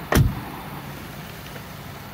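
A single solid thud about a fifth of a second in: the rear passenger door of a 2020 Subaru Crosstrek being shut. A steady low hum of background noise follows.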